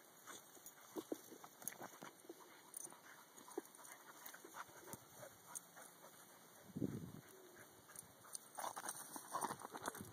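Dogs playing on grass: scattered light thuds and rustles, with a short, low vocal sound from a dog about seven seconds in.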